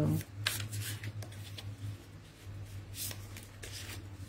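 Tarot cards being shuffled and handled, a few short rustling strokes, over a steady low hum.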